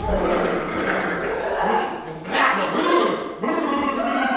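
A man's loud, wordless shouting and cries, with a sharper cry about two and a half seconds in.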